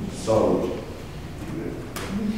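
A person speaking a short phrase beginning about a quarter second in: speech the transcript did not catch.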